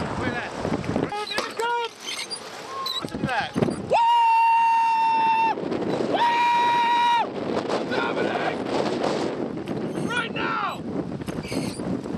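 Two long, steady bleep tones at one pitch, the first about a second and a half long and the second about a second, cutting in and out abruptly amid excited voices.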